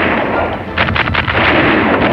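Film-soundtrack gunfire in a shootout: a continuous loud roar of firing, with a quick cluster of shots a little under a second in.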